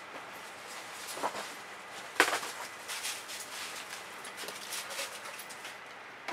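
Dry leaves crunching and rustling under dogs running around, in scattered crackles with a sharper one about two seconds in.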